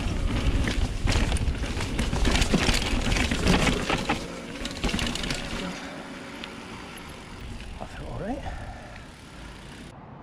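Mountain bike ridden over a rooty dirt track: loud rushing noise with rapid clatter and rattle from the bike over the bumps, dropping to a quieter roll on smooth tarmac about four seconds in.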